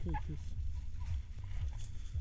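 A voice trails off just at the start, then a low, uneven rumble of wind buffeting an action camera's microphone.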